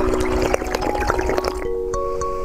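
Water with small jelly beads sloshing and pouring from a tilted glass into the mouth, a dense crackle of little splashes and gulps that stops near the end. Background music of slow held notes plays underneath.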